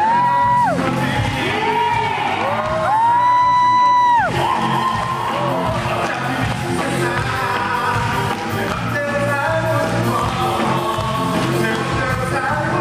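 Live musical-theatre song over amplified backing music. A singer holds long, high notes, the longest lasting about a second and a half, starting about three seconds in.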